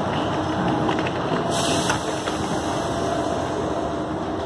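Steady noisy bustle of passengers boarding a train, with suitcase wheels rolling over the floor and a few clicks about halfway through as the luggage crosses the door threshold.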